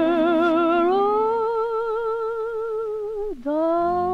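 A woman's voice holding a long wordless sung line with wide vibrato over instrumental accompaniment. The pitch rises about a second in and is held, then slides down and breaks for a breath a little after three seconds before the line resumes, as a lower chord comes in underneath near the end.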